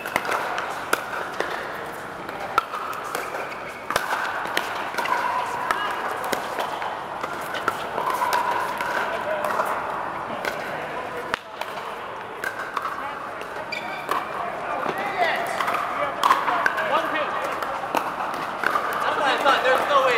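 Pickleball play in a large air-supported dome: sharp pops of paddles striking the plastic ball and the ball bouncing, at irregular intervals from several courts. They sit over a steady murmur of players' voices.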